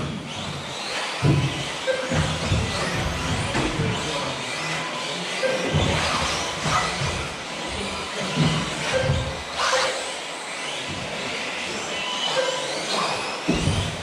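Several electric 1/10-scale 2WD off-road RC buggies racing together, their motors whining up and down in pitch as they accelerate and brake, with occasional sharp knocks as cars strike the track or its edges, echoing in a large hall.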